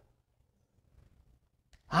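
Near silence during a pause in a man's speech, with a brief breath near the end before his voice returns.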